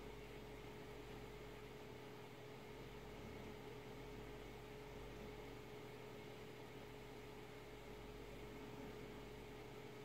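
Near silence: faint, steady room tone of microphone hiss with a low, constant hum.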